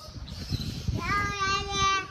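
A child's voice calling out one long, held note, starting about halfway through, after a second of low rumbling handling noise.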